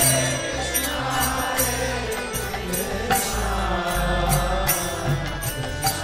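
Devotional chanting with music: several voices chanting a mantra over repeated metallic percussion strikes and a low sustained drone.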